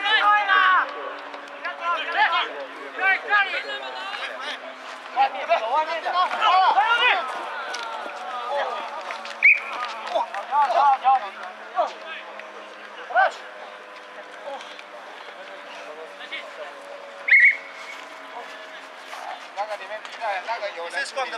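Referee's whistle blown in two short, sharp blasts about eight seconds apart, over players and spectators shouting.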